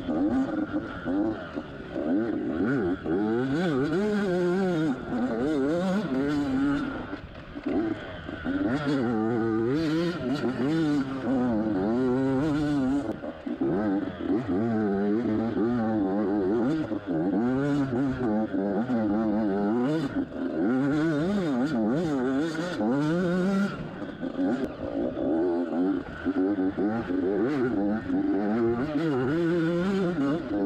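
Yamaha YZ85's two-stroke single-cylinder engine revving up and down continually as the dirt bike is ridden along a rough woods trail. The engine note drops briefly off the throttle a few times.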